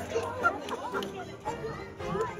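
Audience chatter: several voices talking over one another at once.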